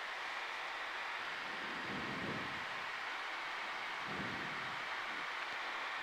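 Steady rushing hiss of airflow and engine noise inside the cockpit of a Cessna CitationJet CJ1 in flight.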